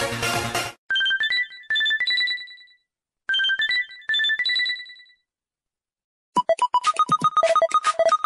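LG KS360 mobile phone ringtones played back one after another. A full musical ringtone cuts off under a second in. Next a short chime of a few clear, rising notes plays twice. After about a second of silence, a quick ringtone of rapid staccato beeps begins near the end.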